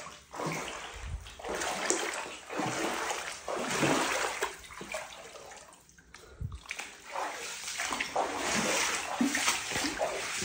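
Footsteps wading through shallow floodwater on an apartment floor, the water sloshing and splashing with each step, with a short pause about halfway through.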